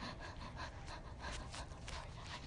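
Faint breathing close to a phone's microphone, with soft rustling.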